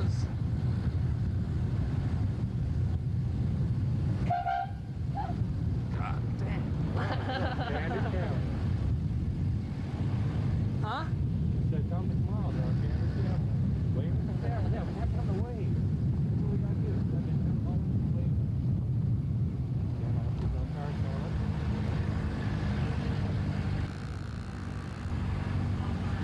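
A car driving along a winding mountain road: a steady low rumble of engine and road noise, with faint voices now and then.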